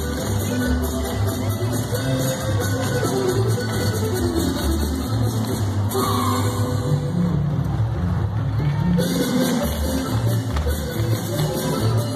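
Chihuahua-style polka music playing loud with a steady beat.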